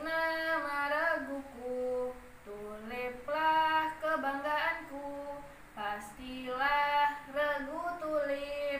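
A young woman singing a Pramuka scout yel-yel (a patrol cheer song) solo and unaccompanied, in Indonesian, in sung phrases of held notes with short breaks between them.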